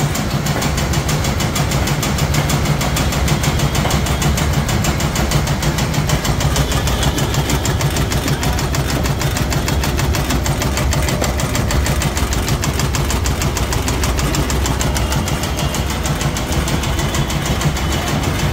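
A 9-inch electric tobacco (khaini) cutting machine running steadily, its motor-driven crank working the cutting blade in a fast, even, repeated chopping clatter over a low motor hum as dried tobacco leaves are fed through.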